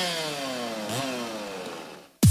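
Chainsaw cutting a fallen tree trunk. Its engine pitch slides steadily down, picks up briefly about a second in, then sinks again and fades toward the end.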